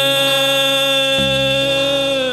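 Vietnamese funeral band music: one long, buzzy held note with no wavering, over a low bass note that steps down lower about a second in.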